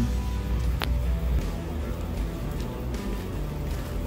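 Background music with steady low bass notes and a held tone, and one brief click a little under a second in.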